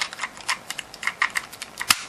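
Light plastic clicks and ticks at an uneven pace from a toy motorcycle being handled on its pull-back roller, with one sharper click near the end.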